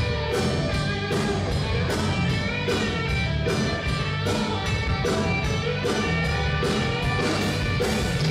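Live rock band playing an instrumental passage: electric guitars and bass over a steady drum beat.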